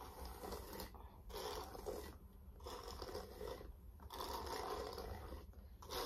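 A paddle hairbrush dragged down through long hair with mega hair (hair extensions), about four slow strokes, each a scratchy rasp. The noise comes from the brush passing over the extensions attached near the top, which makes it sound as if the hair is being torn apart.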